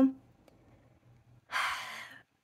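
A short, soft audible breath in by a woman, about a second and a half in, fading away.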